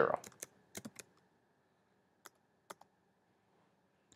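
Keystrokes on a computer keyboard: a quick run of about five light taps in the first second, then three more spaced taps about two to three seconds in.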